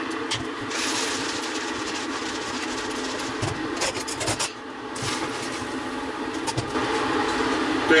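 Lid of a stainless steel beer keg being worked loose and lifted off, with a few sharp metal clicks about three and a half to four and a half seconds in, over a steady background noise.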